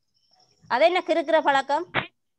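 A high-pitched voice speaking a few words, about a second and a half long, starting a little after the start, preceded by a faint thin high whine and ending with a short click.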